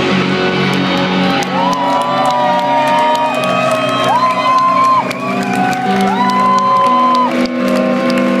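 Rock band playing live: electric guitar holding long sustained lead notes that slide into one another from about a second and a half in, over steady chords, bass and drums.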